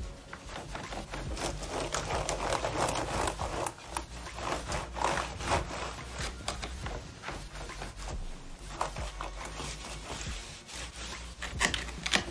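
Dry microfibre cloth rubbed back and forth over an Acer Nitro laptop's keyboard and palm rest, making irregular swishing strokes, with a sharper tap near the end.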